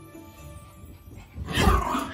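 Faint background music, then about a second and a half in a small dog starts barking loudly at close range.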